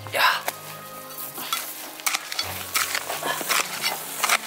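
A small hand hoe chopping and scraping into dry, stony soil in repeated irregular strokes, the loudest just at the start, over soft background music with sustained low notes.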